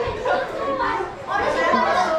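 Several people talking over one another in a room, with a brief lull about a second in.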